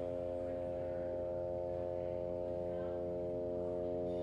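Experimental live music: a sustained, unchanging drone of many steady tones stacked together, held at an even level without any beat.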